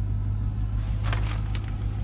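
Ram TRX's supercharged 6.2-litre V8 running steadily, a low hum heard from inside the cab. Crinkling of the plastic wrapping on the centre console about a second in.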